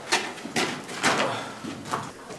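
Footsteps walking on a hard mine-tunnel floor, about two steps a second, each step echoing.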